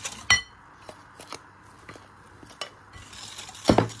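A utensil strikes the glass mixing bowl with a sharp, ringing clink just after the start. Faint taps and scrapes of mixing follow, then a heavier knock near the end.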